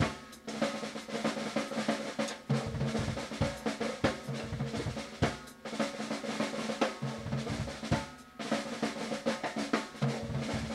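A drum kit played solo: a dense run of rapid strokes on the drums, broken by a few short pauses, with the drumheads ringing under the hits.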